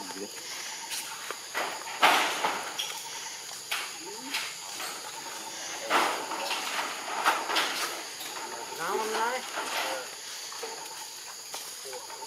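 A few short, sharp rustling or scuffling noises, the loudest about two seconds in and another about six seconds in, then a voice murmuring briefly about nine seconds in.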